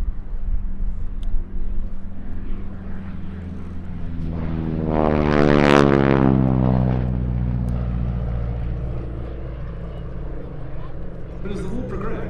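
North American Harvard IV's Pratt & Whitney R-1340 Wasp radial engine and propeller in a close flypast. The sound builds to a peak about five to six seconds in, then drops in pitch and fades as the aircraft pulls away.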